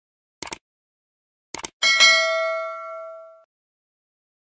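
Subscribe-button sound effect: a click, then a quick double click, then a notification bell ding that rings out for about a second and a half.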